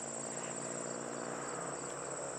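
Crickets chirping in a steady, high, pulsing trill.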